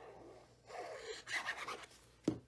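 A sheet of cardstock rustling and scraping against paper on the work surface as it is lifted and turned over. It starts quietly and grows louder about two-thirds of a second in.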